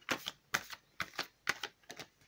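An Oracle of the Unicorns card deck being shuffled by hand: a run of short, crisp card clicks and slaps, about four a second.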